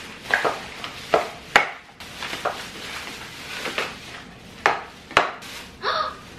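Plastic grocery bags rustling as groceries are unpacked, with about six sharp knocks as packages (plastic clamshells, tubs and cans) are set down on the countertop.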